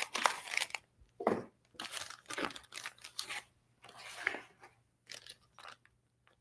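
A small cardboard box being opened and its packing handled: irregular crinkling and tearing of cardboard and packing material in short bursts.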